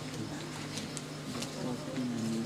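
Faint murmur of voices in the crowd over a steady low hum.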